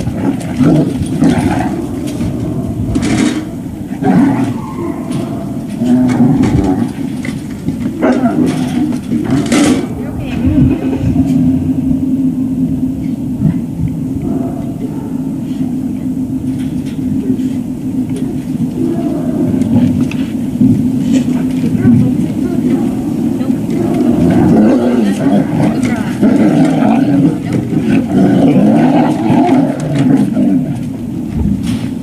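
Puppies eating kibble from steel bowls in a feeder stand, with scattered crunching and bowl clinks and two sharper metallic knocks, about 3 and 9.5 seconds in. A steady low hum runs underneath.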